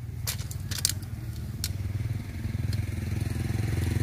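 A small engine running steadily and growing gradually louder, with a few sharp clicks in the first two seconds.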